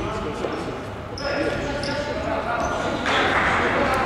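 Futsal being played on a wooden sports-hall floor: shoes squeaking in short high chirps several times, and the ball thudding as it is kicked and bounces, echoing in the large hall, with players' voices calling out. A louder, noisier stretch comes near the end.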